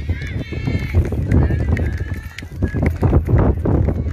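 Footsteps of a group walking on hard-packed dirt, irregular crunching steps, with wind buffeting the microphone and voices talking in the background.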